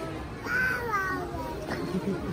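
A toddler's short high-pitched vocal call about half a second in, bending up then falling in pitch, over the chatter of a dense crowd of shoppers.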